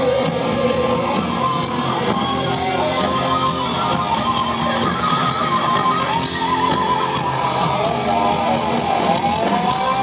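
Heavy metal band playing live in an arena. An electric guitar lead line with wavering, bending notes runs over the full band.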